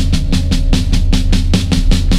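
Psychedelic stoner rock band playing: drums hitting a fast, even beat of about eight strokes a second over a heavy, steady low bass.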